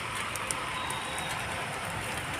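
Steady rushing noise of a moving vehicle on a forest road, with a few faint steady tones mixed in, at an even level.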